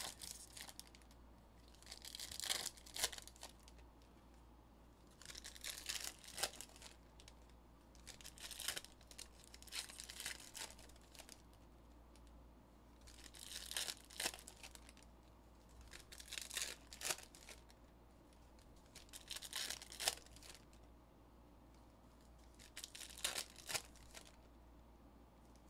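Foil-wrapped Panini Mosaic trading-card packs being torn open one after another, with wrapper crinkling: about eight short bursts of tearing and rustling, one every three seconds or so.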